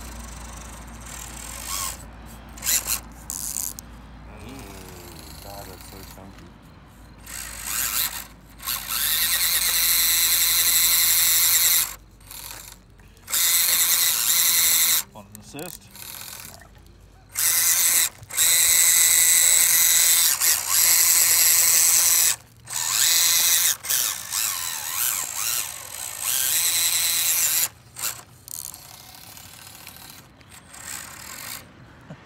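Axial SCX24 micro RC crawlers' small electric motors and gear drivetrains whining under throttle on a steep dirt climb, in several bursts of a few seconds each that start and stop abruptly as the throttle is applied and released.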